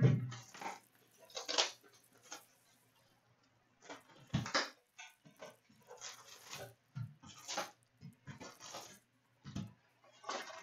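Cardboard hobby box of hockey card packs being opened by hand and its packs lifted out onto a glass counter: a series of short rustles, scrapes and taps, the loudest about one and a half and four and a half seconds in.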